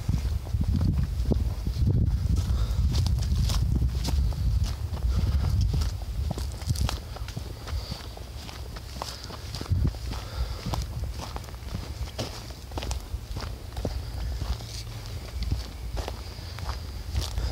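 Footsteps on a dry, leaf-littered dirt trail, irregular steps throughout, with a heavy low rumble on the microphone during the first six seconds that then eases off.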